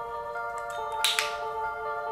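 Two quick sharp clicks close together about a second in, with a brief bright after-ring, over soft background music with mallet-like tones.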